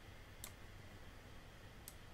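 Near silence with two faint computer mouse clicks, one about half a second in and one near the end.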